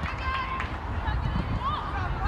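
Short, high-pitched voice sounds that no words can be made out of, over a steady low rumble.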